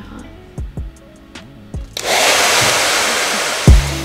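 Handheld hair dryer blowing with a steady rushing noise that starts suddenly about halfway through and stops abruptly near the end, over background music with a beat.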